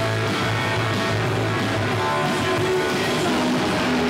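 A punk rock band playing live: loud strummed electric guitar over a steady bass line, recorded through a camcorder microphone.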